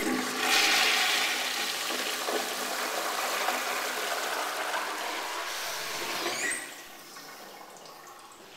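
A Sloan Royal flushometer flushing a 1928–29 Standard Ejecto side-spud toilet bowl: a loud, steady rush of water through the bowl for about six and a half seconds, then dropping off sharply to a quieter wash.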